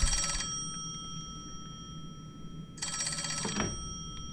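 Telephone bell ringing with a rapid trill. One ring ends about half a second in, and a second ring comes nearly three seconds in.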